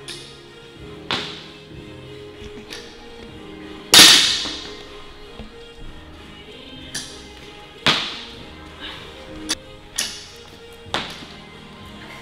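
Loaded barbell with rubber bumper plates hitting a wooden lifting platform, one loud crash about four seconds in that rings off, with several lighter knocks and clanks of bar and plates around it. Background music plays throughout.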